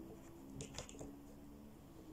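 Faint room tone with a few light clicks of hard plastic toy play-set pieces being handled, about half a second to a second in.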